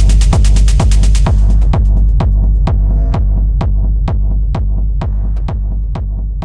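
Outro of a minimal techno track: a steady kick drum about twice a second over a sustained bass drone. The dense hi-hat pattern drops out about a second in, leaving sparser clicks, and the mix slowly fades.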